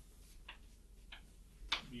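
Chalk tapping against a chalkboard as terms are written: three short, sharp ticks a little over half a second apart, over a faint steady room hum.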